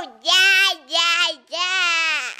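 A young girl singing three drawn-out notes close to the microphone, her pitch wavering.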